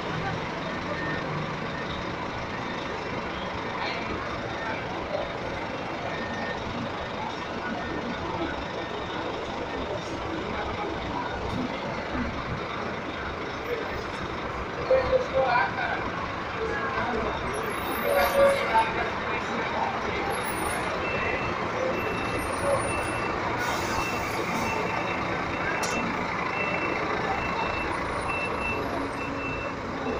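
A Marcopolo coach bus running steadily as it pulls away and drives past. About two-thirds of the way through, a vehicle's reversing alarm starts beeping at an even pace, roughly one and a half beeps a second.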